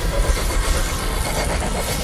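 Film sound effects: a loud, steady low rumble.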